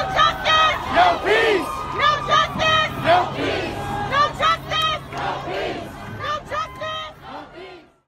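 A crowd of protesters chanting "No justice! No peace!" in unison, fading out over the last couple of seconds.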